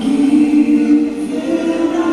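Choral church music accompanying a liturgical dance, with long held sung notes that step up in pitch about one and a half seconds in.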